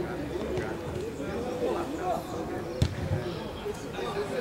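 Players' voices calling across an outdoor football pitch, with one sharp thud of a football being kicked nearly three seconds in.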